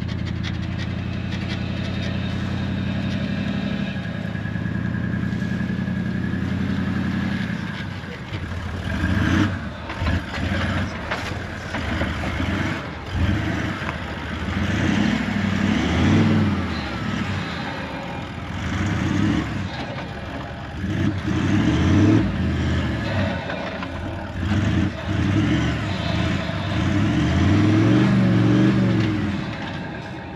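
A four-wheel-drive ute's engine towing a boat trailer through soft beach sand: a steady drone for the first several seconds, then revs rising and falling again and again as it works through the sand.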